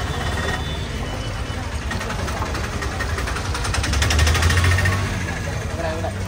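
A motor vehicle's engine running close by on the street, a low hum with a rapid, even ticking, swelling to its loudest about four to five seconds in and then easing off.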